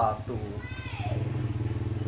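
A motor engine running steadily with a low, even pulse, under a man's voice at the start.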